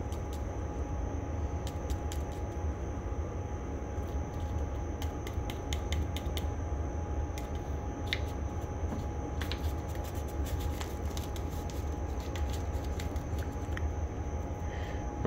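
Paper seasoning packet crinkling and ticking in the hand as the powder is shaken out of it, a string of small irregular clicks over a steady low hum.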